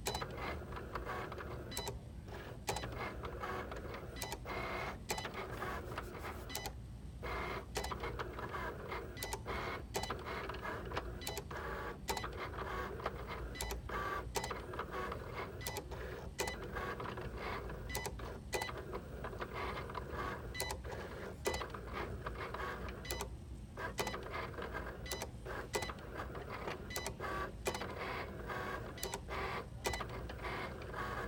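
Cricut electronic cutting machine running a cut job: the carriage and roller motors whir steadily with frequent sharp clicks, pausing briefly about seven seconds in and again near twenty-three seconds. The owner reports that the machine runs like this without cutting the material.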